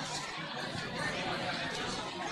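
Many children chattering at once, their overlapping voices making a steady hubbub.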